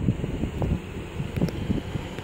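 Wind buffeting the microphone, an uneven low rumble with a few faint knocks.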